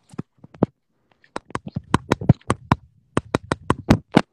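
Fingers tapping on a phone held close to the microphone: a few sharp clicks, then quick irregular runs of taps, about six or seven a second, with a short break near three seconds in.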